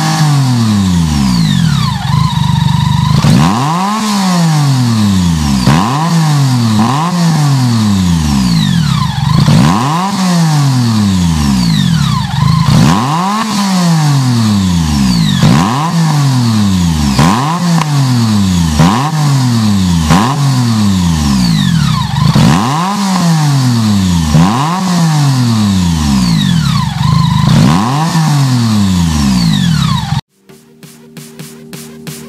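BMW K-series motorcycle's inline engine revved repeatedly while standing, the throttle blipped roughly every one and a half to two seconds, each rev climbing quickly and then falling back slowly.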